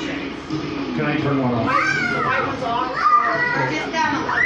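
Indistinct chatter of several people talking at once, with a high-pitched voice calling out twice, about two and three seconds in.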